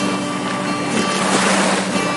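Small waves washing up onto a sandy beach, the rush of surf swelling and easing, with background music holding steady notes underneath.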